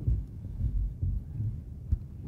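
Low, uneven thumping rumble, with one sharp click near the end.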